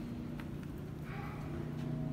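Indoor room tone: a steady low hum with a few faint clicks or taps, and a brief faint murmur about a second in.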